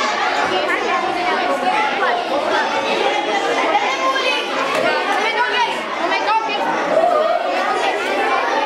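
A crowd of children chattering at once in a large hall: a steady hubbub of many overlapping voices.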